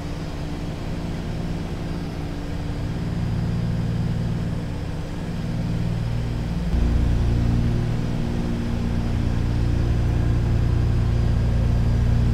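Douglas DC-3's twin radial piston engines and propellers droning steadily on approach, a stack of even, steady tones. About two-thirds of the way in the drone grows deeper and louder.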